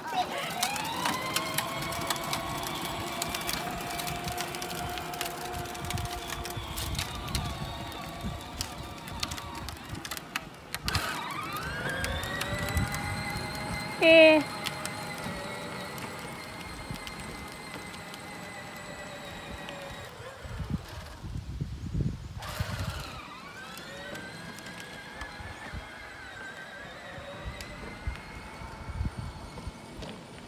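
Electric drive motor of a battery-powered John Deere Gator kids' ride-on toy whining as it drives: three runs, each starting with a rising whine that settles to a steady pitch, with brief cut-outs about ten seconds and twenty seconds in. A child's loud laugh about fourteen seconds in.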